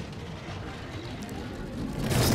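Two-man bobsled running at speed down an iced track: a steady, even rush of the runners on the ice.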